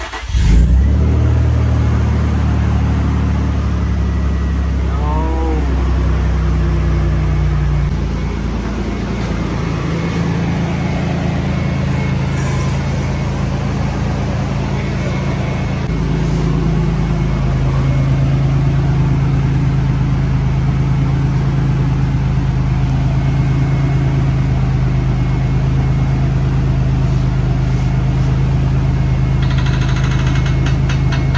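Nissan Stagea's engine catching and flaring at its first start after the front of the engine was put back together, then settling into a steady idle. The idle note drops about eight seconds in and shifts again around sixteen seconds.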